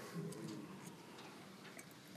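Quiet room tone with a faint, low murmur of voices about half a second in and a few light, scattered clicks.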